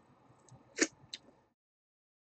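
A faint tick, then one short sharp click or smack a little under a second in, and a fainter high tick just after, over faint room hiss. Halfway through, the sound drops out to dead silence.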